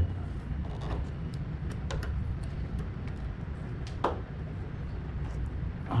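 Scattered light clicks and knocks of plastic parts being worked loose on a split-type aircon indoor unit, over a steady low rumble.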